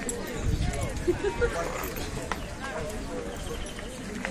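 Horses' hooves clopping on a paved street, a few scattered steps rather than a steady gait, among the talk of a crowd.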